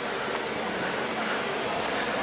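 Steady street noise of road traffic, an even hiss with no single distinct event.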